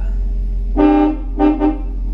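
Car horn honked: one honk about a third of a second long, then two quick short toots.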